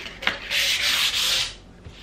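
240-grit sandpaper rubbed by hand over a bare wooden tabletop in a light smoothing sand: a short scrape about a quarter second in, then one long sanding stroke lasting about a second.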